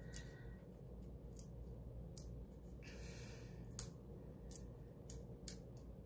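Quiet room tone with a few faint, scattered clicks and a brief soft hiss about three seconds in.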